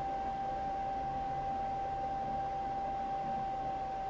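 A pause with no speech: only a steady high-pitched whine and an even hiss from the recording.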